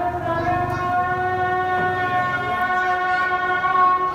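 A person's voice holding one long, loud call on a single steady pitch after sliding up into it, cut off sharply after about four seconds.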